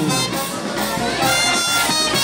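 A street band of wind instruments playing a tune, with long held notes.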